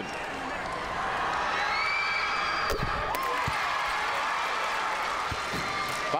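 Basketball arena crowd cheering and shouting as a free throw drops, swelling about a second in, with a few high calls over the noise. A single sharp thud comes near the middle.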